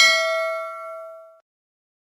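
A single bell-like ding sound effect, struck once and ringing out with a clear tone that fades away within about a second and a half. It is the notification-bell chime of a subscribe-button animation.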